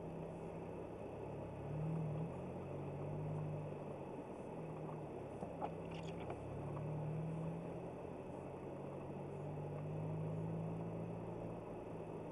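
Car engine and tyre noise on a wet road, heard from inside the cabin through a windscreen dashcam. The low engine hum rises and falls in pitch several times as the car drives, with a couple of faint clicks about five and six seconds in.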